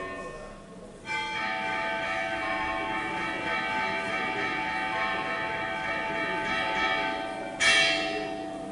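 Altar bells ringing at the elevation of the chalice during the consecration. The bells start suddenly about a second in and ring on steadily, with a fresh, louder ring near the end.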